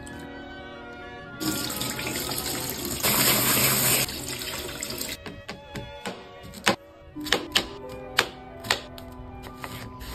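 Water running and splashing as strawberries are washed in a bowl, loudest for about a second near the middle. It is followed by a series of sharp, uneven knocks as a kitchen knife cuts strawberries on a plastic cutting board, over background music.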